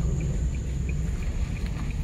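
Steady low rumble of a car's cabin as it drives slowly onto a dirt road, with a faint, regular ticking about three times a second.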